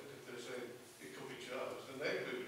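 Speech only: a man talking into a desk microphone in a small meeting room.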